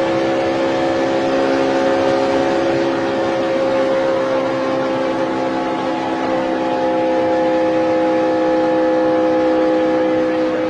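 Onboard sound of a NASCAR stock car's V8 engine held at steady full-throttle pitch at racing speed, over a continuous rushing noise.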